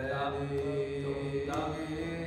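Voices chanting in long held notes over a low drone, the pitch shifting a couple of times.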